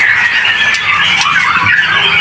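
Many caged young white-rumped shamas (murai batu fledglings) calling at once, a continuous mass of overlapping high, wavering calls.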